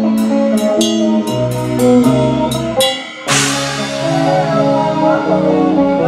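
Live rock band playing: electric guitar notes over a drum kit, with sharp cymbal strokes. About three seconds in the music briefly drops, then a crash cymbal hit rings out as the band comes back in.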